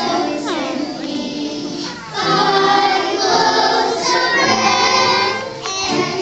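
A group of preschool children singing a song together, growing louder about two seconds in.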